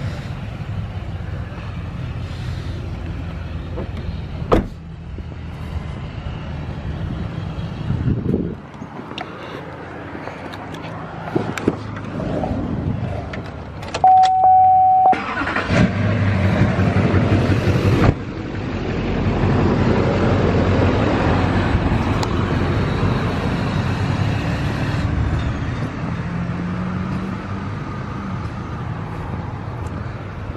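Duramax V8 turbodiesel truck engine idling steadily, with a few sharp clicks and a single steady electronic beep about halfway through.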